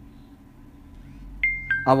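A two-note electronic chime, a high note then a lower one, about a second and a half in, the second note ringing on briefly.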